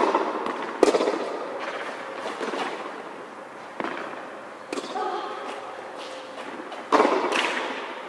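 A tennis rally on a hard court: five sharp pops of racket strikes and ball bounces, each trailing a long echo under the covered court's metal roof. The loudest pops come at the start, just before the first second and near the end.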